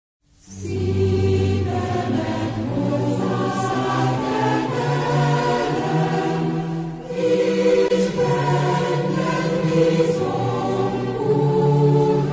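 Choral music in slow, held chords, coming in right after a moment of silence.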